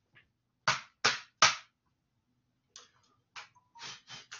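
Three sharp taps in quick succession, about a third of a second apart, then a few fainter clicks.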